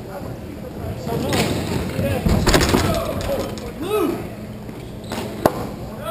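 Hockey players shouting during a scramble in front of the goal, with a burst of clattering stick and ball impacts about two seconds in. A single sharp crack comes near the end.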